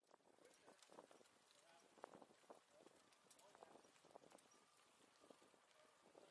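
Faint ambience of riding a bicycle along a city street: scattered light clicks and rattles over a soft hiss.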